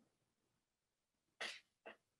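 Near silence on a video call, broken by a short, sharp breathy sound from a person about one and a half seconds in and a shorter one just before the end.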